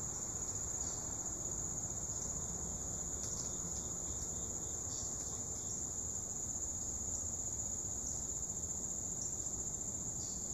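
Steady, high-pitched chorus of insects buzzing without a break, with a few faint ticks near the middle.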